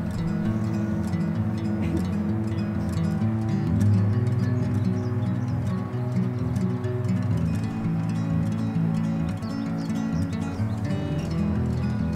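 Background music: a gentle instrumental track of plucked strings over sustained low notes.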